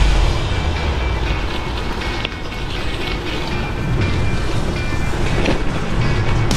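Gravel bike rolling over a rough, muddy track: steady tyre noise, with the bike rattling and ticking over the bumps.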